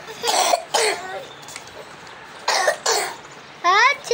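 A person coughing: two pairs of short coughs, the first pair soon after the start and the second about two and a half seconds in. A child's high-pitched voice starts near the end.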